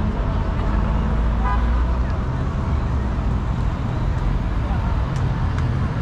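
Steady city traffic with a low rumble, a brief car-horn toot about a second and a half in, and passers-by talking.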